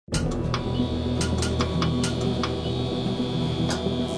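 Logo-intro music: a steady low drone under a thin, high held tone, with sharp clicks scattered through it. It starts abruptly at the very beginning.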